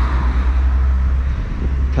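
A car driving past on the road, its tyre noise fading away, over a steady low rumble.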